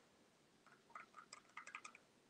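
Near silence, broken by a run of faint small clicks and taps in the second half: a wet paintbrush working paint in the pans of a plastic watercolour set.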